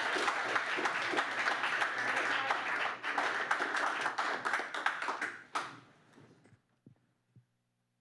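Audience clapping in applause, a dense patter of many hands that fades out about six seconds in.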